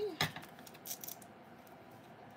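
Light handling clicks of a clear photopolymer stamp being moved and set down on a plastic die storage sheet: one sharp click just after the start, then a few faint ticks about a second in.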